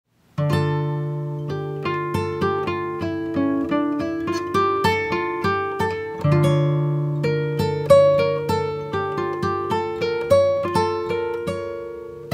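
Background music: an acoustic guitar picking single notes over a low bass note, several notes a second, starting about half a second in.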